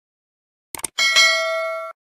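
Notification-bell sound effect: two short clicks, then a bright ding struck twice in quick succession, ringing with several steady tones and cutting off suddenly.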